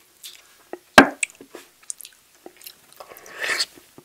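Close-miked eating of a sauce-coated chicken wing: a sharp, loud bite about a second in, then small wet chewing sounds and a longer stretch of wet chewing near the end.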